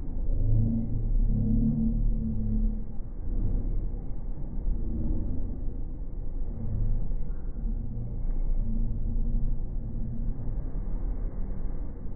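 Low rumble of a JR commuter train running through the station, heard from on board, slowed down and pitched down by slow-motion playback. It swells and eases unevenly.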